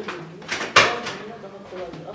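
A man's brief wordless vocal sounds, with a sharp noisy burst about three-quarters of a second in.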